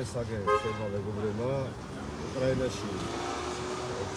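A man talking on a city street, with a short, high car-horn toot about half a second in.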